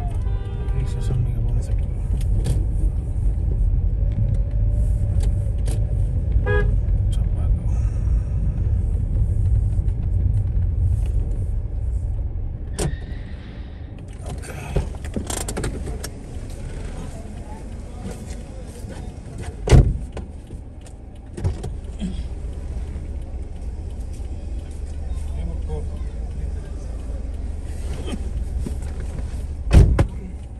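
Low, steady rumble of a car moving through city traffic, heard from inside the cabin. It is louder for the first dozen seconds and drops as the car slows. A horn sounds at the very start, and two sharp thumps come about twenty seconds in and again near the end.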